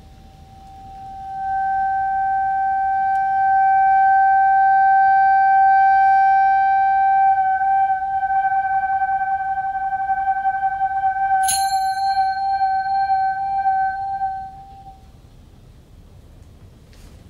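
Accordion holding one long high note that swells in over the first two seconds, begins to waver about halfway through, and fades away near the end. A single bright struck sound with a short ring cuts in a few seconds before the note ends.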